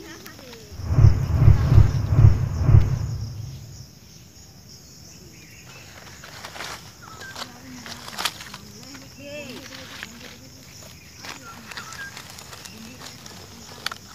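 Dry fallen leaves crackling and rustling, with scattered sharp clicks, as a hand reaches into the leaf litter and picks wild mushrooms. Near the start a loud low rumble on the microphone lasts about three seconds.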